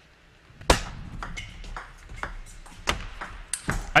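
Table tennis rally: a serve and a quick exchange, the plastic ball clicking sharply off the bats and the table. About a dozen clicks follow one another over the last three seconds, the first and loudest about 0.7 s in.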